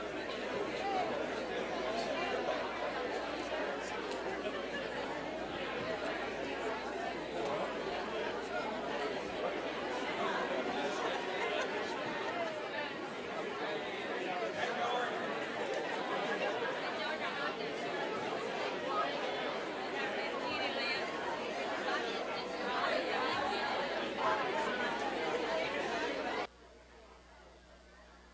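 Many overlapping voices of a church congregation chatting at once as people greet each other, a continuous babble that fills the sanctuary.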